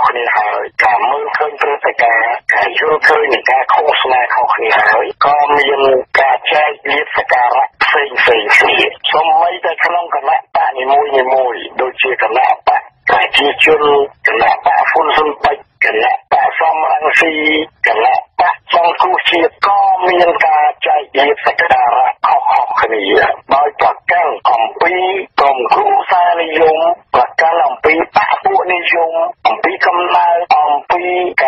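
Speech only: a voice reading the news in Khmer without a break, with a thin sound cut off in the highs like a radio broadcast.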